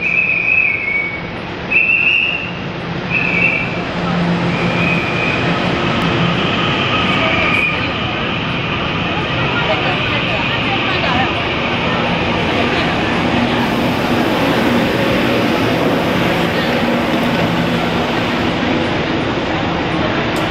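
Puyuma Express TEMU2000 electric train pulling into an underground platform: a series of short high tones in the first few seconds, then the steady rolling noise of the train coming in and slowing to a stop, which carries on as it stands at the platform.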